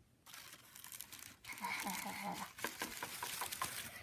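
Tissue paper crinkling and rustling in rapid, irregular crackles as it is handled, starting about a quarter second in, with a faint voice under it.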